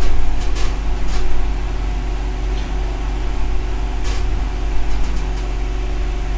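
Steady low hum with several short, sharp clicks scattered through it.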